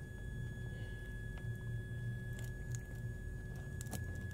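Steady high-pitched whine from a toroidal transformer pulsed by a signal generator at about 1.6 kHz, with a low electrical hum beneath. A few faint clicks come as magnets are moved on the core.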